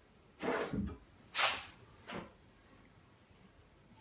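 Three short handling noises in the first two seconds or so as a caulk gun is squeezed and worked along a wooden frame, laying a bead of caulk around denim insulation.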